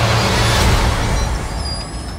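Film sound effect of a spaceship's engines: a loud, deep rumbling noise that fades near the end.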